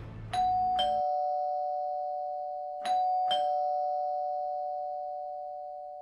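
Doorbell chime rung twice, each time a two-note ding-dong with the higher note first. The notes ring on and slowly fade away after the second ring.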